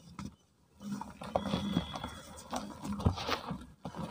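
Soft cast cement chunks and dry cement powder crunching and crumbling as they are squeezed and sifted by hand in a plastic tub. The crackly crunching has many small clicks and starts about a second in, after a brief quiet.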